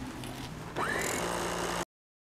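Small electric food chopper grinding dried rose petals. About a second in, the motor spins up with a rising whine, then runs steadily until the sound cuts off suddenly just before the end.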